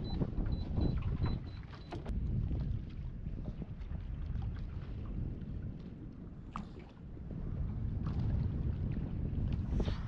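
Wind buffeting the microphone and water lapping against a small fibreglass boat's hull, an uneven low rumble throughout. A faint high intermittent tone sounds in the first couple of seconds.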